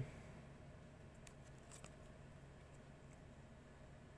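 Near silence with faint handling of a cardboard trading card as it is turned over in the fingers: one light click about a second in, then a few softer ticks.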